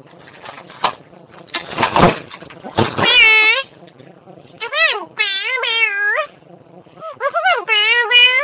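A run of loud, high-pitched, wavering meow-like calls, each about half a second long, starting about three seconds in after some breathy noise and a few clicks.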